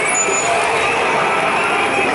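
Road traffic moving past close by, a London black taxi and cars among it, with crowd voices mixed in.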